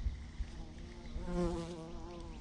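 A bee buzzing close by with a wavering hum. It grows louder about a second in, then fades a little.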